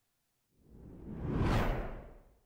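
A whoosh transition sound effect. It swells in after about half a second of silence, peaks about a second and a half in, and begins to fade at the end.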